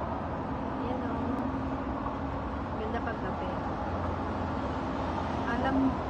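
Steady hum of city road traffic from a busy road below, with a low, held engine-like tone coming and going.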